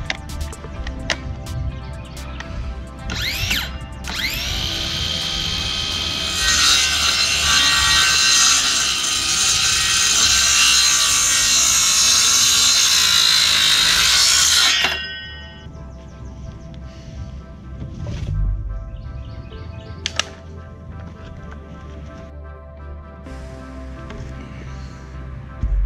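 Cordless Porter-Cable 20V circular saw: a short burst about three seconds in, then the motor spins up with a rising whine and cuts through a wooden board for about eight seconds, stopping suddenly about fifteen seconds in. Background music plays throughout.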